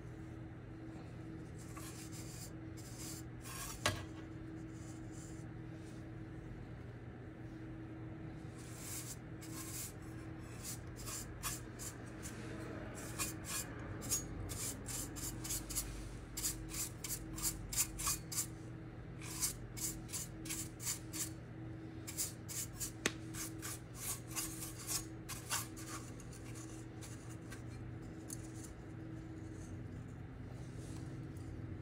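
Quick runs of scratchy rubbing strokes on the metal housing of a dusty ASIC miner as the dust is cleaned out of it, over a steady low hum. There is one sharp knock about four seconds in, and the strokes come thick from about nine seconds until a few seconds before the end.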